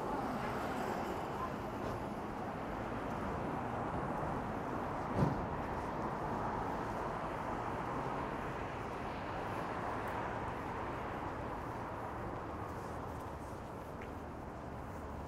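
Steady city-street traffic noise of cars driving past, with one short sharp knock about five seconds in.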